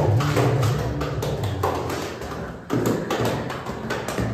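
A quick, uneven run of sharp taps and thumps, with background music fading out near the start.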